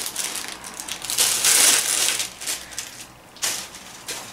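Clear plastic bag crinkling and rustling as it is handled, with small lipstick tubes inside knocking against each other. The loudest rustle comes about a second and a half in, with a shorter one near the end.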